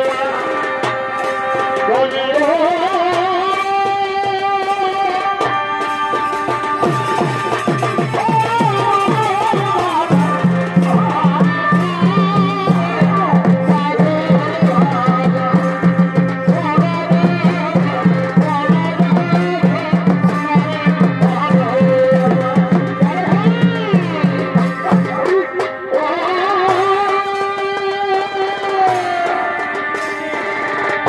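Live Purulia Chhau dance music: a shehnai-like reed pipe plays a wavering, gliding melody over drums. From about a third of the way in until near the end the drumming turns fast and dense over a steady low tone, then the reed melody comes back on its own.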